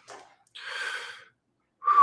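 A person's audible breath: one soft, breathy sound lasting about half a second, about half a second in, taken during a guided deep-breathing meditation.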